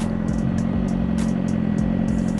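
Suzuki GSX-R sportbike engine running at a steady low speed while riding, its pitch holding even without revving.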